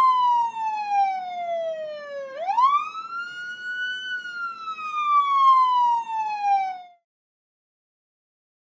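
Police siren wailing: a single tone falls slowly, swoops back up about two seconds in, then falls slowly again and cuts off a second before the end.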